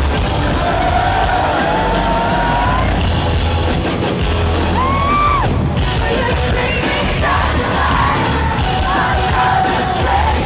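Rock band playing live at loud arena volume, heard from within the audience, with singing over the band and fans yelling and whooping along.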